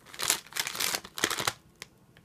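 Paper and plastic medical packaging crinkling and rustling as it is handled, for about a second and a half, with a couple of sharp ticks near the end.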